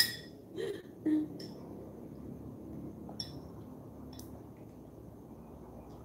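A metal teaspoon clinking against a ceramic mug while stirring tea: one sharp ringing clink at the start, then a few lighter taps spread over the next few seconds.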